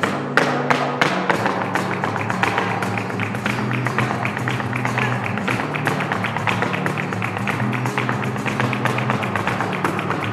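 Live street flamenco: a flamenco guitar plays under the dancer's fast, dense heel-and-toe footwork (zapateado) on a wooden dance board, the taps running many to the second, with a few louder stamps in the first second.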